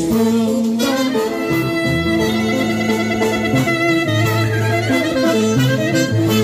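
Live Greek folk dance music from a village band, amplified through PA speakers. An instrumental passage, with the clarinet carrying the melody over electric guitar and drums.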